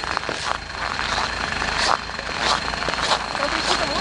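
Footsteps crunching on packed snow, about one every 0.6 s, over the steady low rumble of a backhoe loader's diesel engine running nearby.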